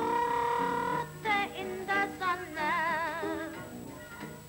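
Early-1930s sound-film recording of a jazz dance band accompanying a singing voice: a note held for about a second, then shorter phrases, then a line sung with a wide, wavering vibrato.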